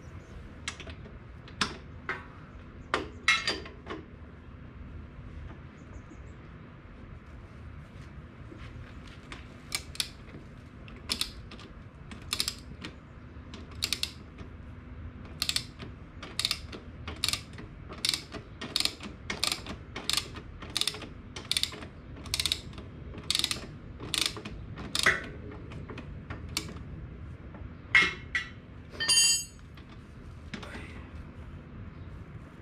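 Socket ratchet clicking as it backs off the motorcycle's rear axle bolt: a few scattered clicks at first, then a steady run of about two a second through the middle, with a last cluster near the end.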